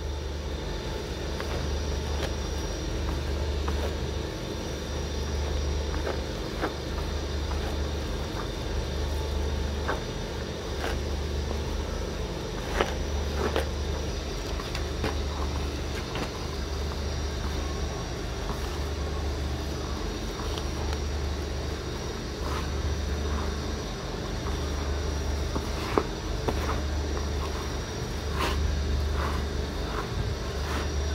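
A hand stirring a grainy feed mix of rice and sawdust in a plastic basin, a rustling scrape with scattered light clicks of grains. Under it runs a low hum that swells about every second and a half, with a faint steady high whine.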